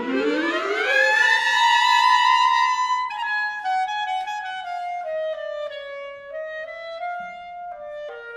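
Clarinet playing jazz-style: a long upward glissando over about a second into a held high note, then a melodic phrase stepping downward.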